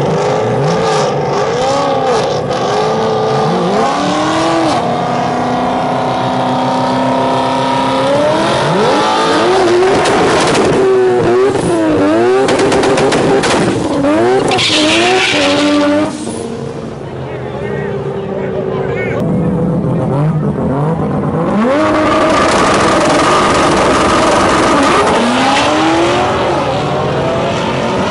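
Mazda RX-7 FD's 20B three-rotor rotary engine revving up and down again and again through a burnout, tires spinning on the wet track. The revs drop suddenly near the middle, then are held high again near the end as the car launches.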